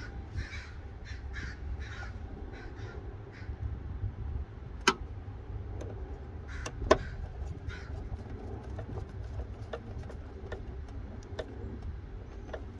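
A crow cawing several times, mostly in the first few seconds, over a steady low rumble. A few sharp clicks come about five and seven seconds in, the one near seven seconds the loudest.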